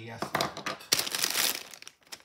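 Plastic food packaging crinkling as it is handled and moved about, loudest around the middle and stopping just before the end.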